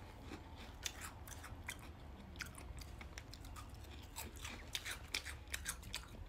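Chewing of crispy puffed mini rice cake bites topped with icing drizzle: faint, irregular little crunches.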